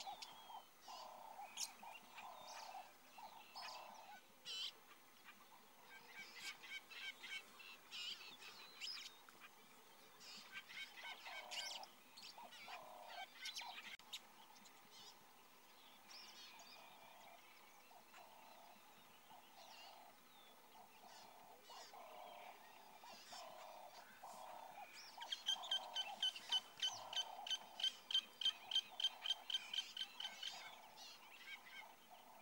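Birds calling: a low call repeated about twice a second, with scattered higher chirps. Near the end a fast, even run of high notes, about four or five a second, starts and is the loudest sound.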